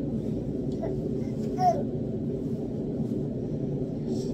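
A baby's brief, high-pitched vocalization about one and a half seconds in, with a few fainter baby sounds before it, over a steady low hum.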